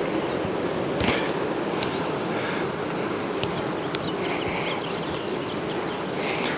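A steady hum of Caucasian honey bees in flight, with a few light clicks.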